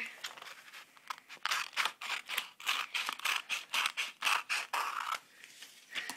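Scissors cutting through a sheet of paper to trim off the excess strip, a quick series of short snips, about four a second, that starts a second and a half in and stops about five seconds in.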